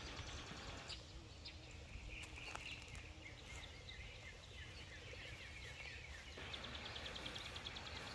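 Faint outdoor ambience with birds chirping in the background, ending in a quick run of short repeated chirps.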